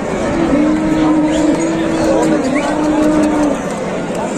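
Cattle mooing: one long, steady, drawn-out moo lasting about three seconds, over the murmur of a crowd.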